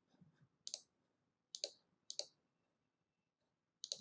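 Three faint computer-mouse clicks spread over about a second and a half, made while working a chart program's settings dialog.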